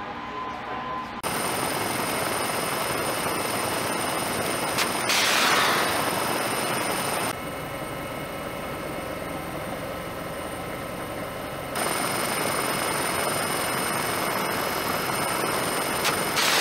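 Royal Navy Wildcat HMA.2 helicopter running, with several steady high whining tones. About five seconds in, a Martlet missile launches: a sharp crack, then a rushing whoosh of about a second. The helicopter noise drops for a few seconds in the middle and rises again before a second launch whoosh starts at the very end.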